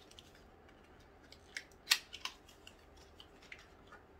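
A bar of soap's paper wrapping being opened by hand: a few scattered crinkles and small taps, the loudest just under two seconds in.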